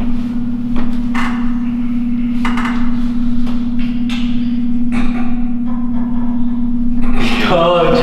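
A loud steady low hum, with a few short rustling or whispering sounds over it. Near the end the hum stops and a voice with a wavering pitch comes in.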